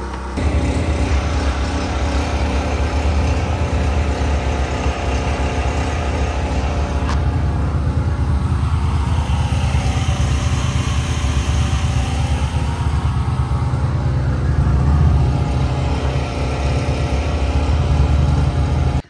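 Portable generator engine running at a steady speed, a constant low hum that cuts in suddenly at the start.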